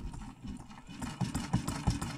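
Homemade motor-driven sausage-wobbling machine running: its crank arm shakes a clamped hot dog sausage, with a quick, uneven clatter of knocks that grows louder after about a second.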